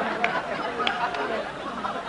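Audience of many voices laughing and chattering at once, easing slightly toward the end.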